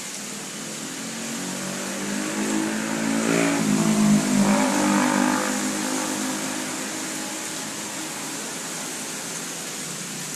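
A motor vehicle's engine passing by, growing louder to a peak about four seconds in and then fading away, over a steady hiss.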